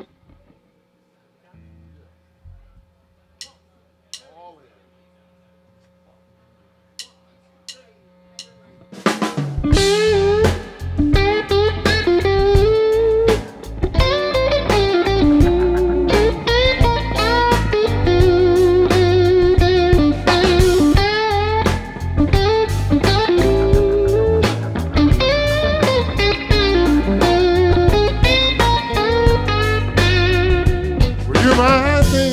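A low steady hum with a few soft clicks, then about nine seconds in a live band starts a blues song at full volume: electric guitars, keyboard and drums.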